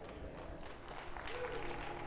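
Congregation applauding, faint and steady, with a voice briefly heard past the middle.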